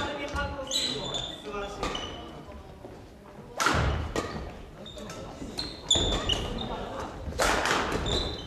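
Badminton rally: shuttlecock struck hard by rackets, three sharp cracks about two seconds apart in the middle and later part, echoing in a large gym hall, with short high squeaks of court shoes on the wooden floor between shots.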